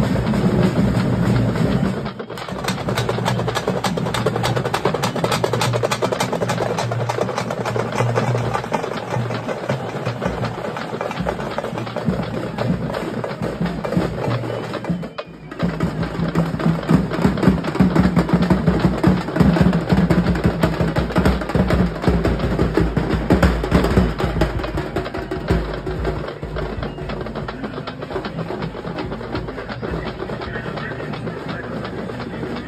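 Loud, fast drumming music with dense rapid strokes. It breaks off abruptly for a moment about two seconds in and again about halfway through.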